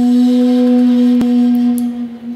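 Intro music: a single steady low ringing tone with a few fainter higher overtones, held throughout, with one brief click a little past a second in.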